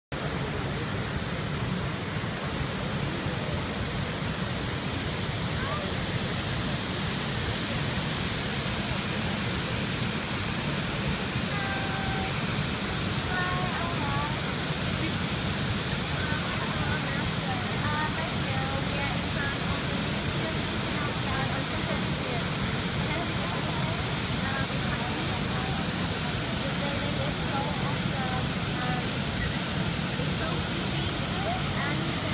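Steady rushing of water pouring down a wide stepped cascade fountain, an even roar of falling water that never changes.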